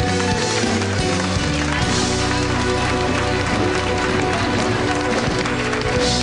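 Live Greek laïko band playing the closing bars of a song: bouzouki over sustained chords and bass, with a dense fast beat setting in about two seconds in.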